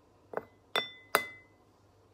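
Metal spoon tapped three times against a glass bowl, about 0.4 s apart, knocking pumice powder off into it. The last two taps ring briefly with a clear glassy tone, and the last is the loudest.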